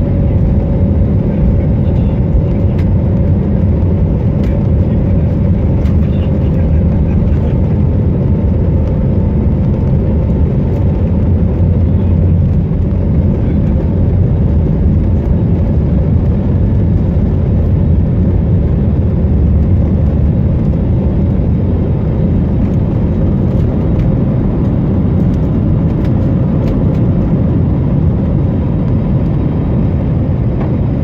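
Airliner cabin noise during the takeoff roll and lift-off: the jet engines at takeoff thrust give a loud, steady low rumble with a faint steady whine.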